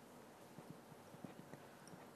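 Near silence, with a few faint, irregular soft clicks.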